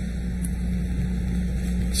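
A steady low hum with a constant pitched drone and an even background hiss, unchanging through the pause.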